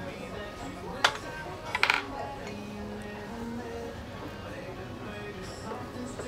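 A few light clinks of tableware, one about a second in and a quick cluster just before two seconds, over soft background music.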